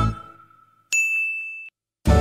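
A single bright ding, a video-edit sound effect, about a second in, held for under a second and cut off abruptly; before it, background music fades out.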